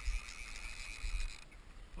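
Wind rumbling on the microphone over moving river water, with a faint steady hiss that stops about one and a half seconds in.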